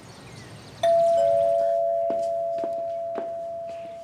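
Two-note 'ding-dong' doorbell chime: a higher note about a second in, then a lower one, both ringing on and fading slowly.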